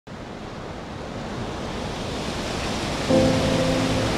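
A steady rushing ambience noise, like wind, swelling gradually. About three seconds in, a low sustained music chord comes in over it.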